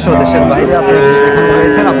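A calf mooing: one long, steady call lasting about a second and a half.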